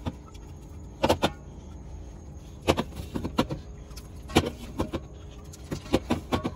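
Aluminium soda cans set down one after another on a glass refrigerator shelf. Each makes a short, sharp clink as it meets the glass and knocks against the cans beside it, about one every second, some doubled.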